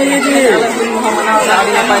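Young men's voices talking over one another, with drawn-out vowels and laughter-like tones.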